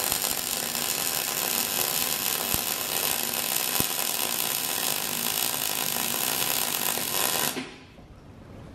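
A MIG welder's arc running steadily in one continuous bead, welding a steel reinforcement plate onto a car's strut tower. It stops near the end.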